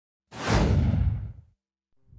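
Whoosh sound effect with a deep low rumble beneath it, starting suddenly about a third of a second in and fading away by about a second and a half, its high part dying first.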